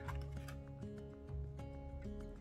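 Soft background music with steady held notes, with a few faint clicks from a plastic wax-melt clamshell being handled.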